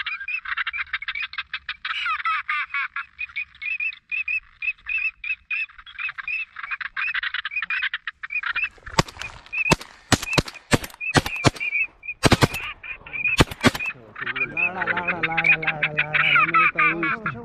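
Rapid high-pitched duck chattering, a fast run of calls several a second, then a volley of 12-gauge shotgun shots from two hunters, more than a dozen cracks in quick clusters over about five seconds, starting about nine seconds in.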